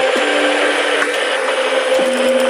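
Electronic music: held synth notes over a dense hiss-like layer of noise, with a few faint clicks.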